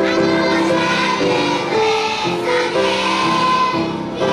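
A group of young boys singing a song together in unison, moving from one held note to the next, picked up by a stage microphone.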